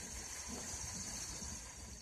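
Faint, steady background hiss with no distinct events: the room tone of a workshop between talking, easing off slightly near the end.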